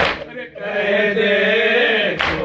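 A crowd of men chanting a noha, a mourning lament, in unison. A single sharp slap, the collective strike of hands on chests in matam, lands right at the start, and the voices carry on holding long notes after a brief dip.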